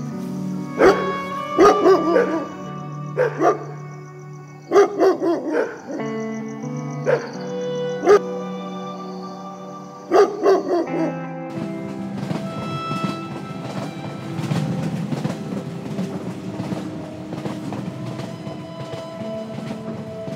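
Slow background music with held notes, and a dog barking about ten times, singly and in pairs, over the first ten seconds. About eleven seconds in the barking stops and the music goes on in a fuller, noisier texture.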